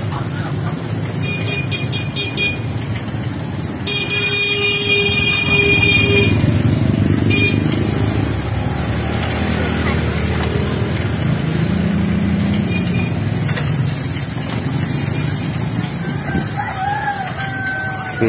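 Steady street traffic rumble with vehicle horns: a quick run of short honks a little over a second in, a longer honk from about four to six seconds, and a brief toot near seven seconds.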